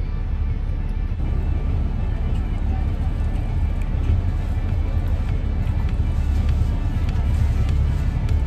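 Steady low rumble of a moving bus, heard from inside the passenger cabin.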